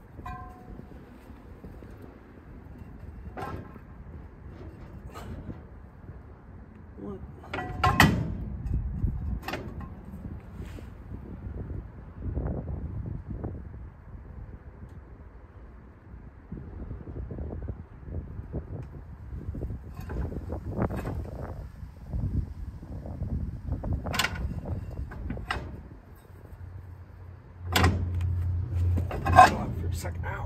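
A cast-iron brake drum being handled and slid over a front wheel hub: scattered metal knocks, clunks and scrapes, the loudest about eight seconds in and a cluster near the end, with a low hum in the last two seconds.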